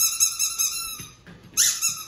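A squeaky plush dog toy squeaking in two long, steady, high-pitched notes, the second starting about one and a half seconds in.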